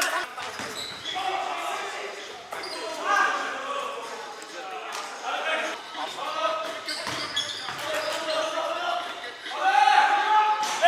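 A basketball bouncing on a hardwood gym floor, echoing in a large hall, with players' voices calling out over it. A louder shout comes near the end.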